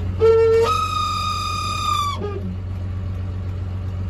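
JCB Fastrac 3185 tractor's diesel engine idling as a steady low hum, heard from inside the cab. Over it comes a high, whistle-like tone that steps up in pitch, holds for about a second and a half, then drops away about two seconds in.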